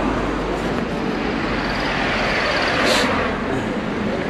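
Road traffic beside the pavement: a car's engine and tyre noise swell as it drives past close by, loudest about three seconds in, over a steady traffic hum.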